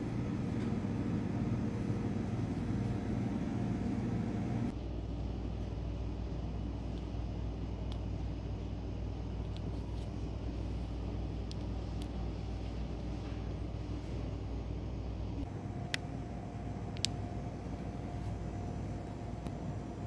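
Steady low hum of shop ambience, its character changing about 5 and 15 seconds in, with a couple of faint clicks near the end.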